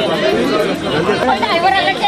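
Several people talking at once, their voices overlapping in a jumble of chatter.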